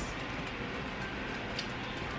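Low, steady room noise with no distinct sound events.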